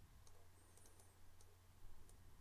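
Near silence, with a few faint computer mouse clicks over a low steady hum.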